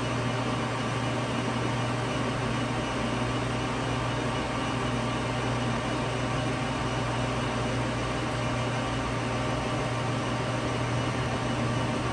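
Clausing Metosa C1340S gap lathe running with its spindle turning and the carriage under power feed: a steady, even hum and whir from the motor and gearing.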